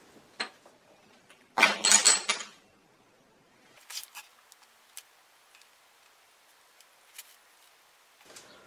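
Small walnut bowtie inlays set down one at a time on a wooden slab, giving a few light, sharp wooden clicks through the second half. A short burst of rustling noise comes about two seconds in.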